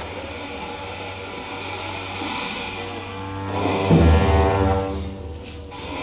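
Tibetan monastic ritual music for the Black Hat cham dance: long sustained horn tones over a low drone, with a loud drum-and-cymbal crash about four seconds in.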